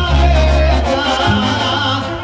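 Live banda sinaloense music played loud: a brass band with a sousaphone bass, trumpets and trombones, the tuba holding a low note through the first second before the line moves on.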